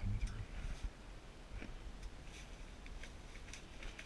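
A few faint, scattered clicks and soft ticks over a quiet background hiss, like small handling and movement noises. There is the tail of a spoken word at the very start.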